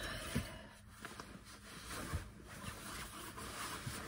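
Faint rustling of clothing being handled and taken off, with a few soft knocks.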